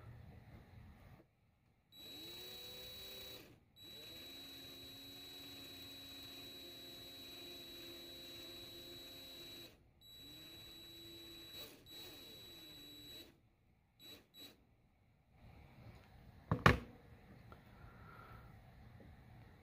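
Cordless drill running in bursts, twisting two coiled copper wires held at the far end in nylon-jaw pliers: the motor spins up with a rising whine, runs steadily, stops and starts again, the longest run lasting about six seconds, then two short blips. A sharp click comes near the end.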